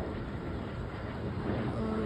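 Steady low rumbling outdoor background noise, with no clear single event.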